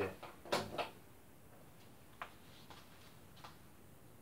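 Sharp CRT television switched on: a sharp click of the power switch about half a second in, with a second short knock right after it as the degaussing coil fires at switch-on. A few faint ticks follow.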